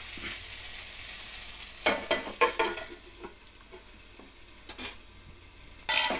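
Tomato-onion masala frying with a steady sizzle in a nonstick pan as a spatula stirs and scrapes it, with a run of scrapes about two seconds in and a couple more near the end. A sharp knock comes right at the end.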